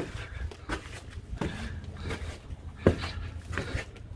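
Footsteps climbing concrete steps at a steady pace, a sharp footfall about every three quarters of a second.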